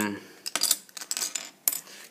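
Small plastic toy pieces from a Kinder Surprise capsule clicking and clattering as they are handled and set down on a wooden table, in a run of light clicks.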